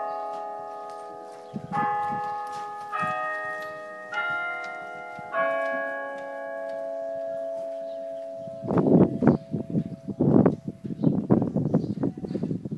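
Bells ringing a slow sequence of different notes, one strike about every 1.2 seconds, each note ringing on. After four strikes the ringing dies away. From about nine seconds in, loud irregular bursts of noise take over.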